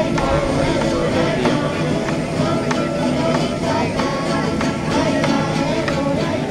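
A small folk ensemble of strummed cuatros (small four-string guitars) with a drum, playing a steady strummed rhythm.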